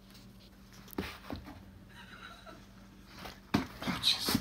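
Quiet room with a steady low hum, broken by a few short knocks about a second in and a sharper, louder one shortly before the end.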